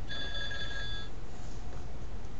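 Steady low hum and hiss with several thin, steady high-pitched tones that stop about a second in.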